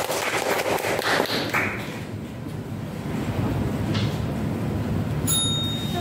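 Audience of students and judges applauding by hand, the clapping dying away about a second and a half in, followed by room noise. Near the end a single ringing ping starts and holds.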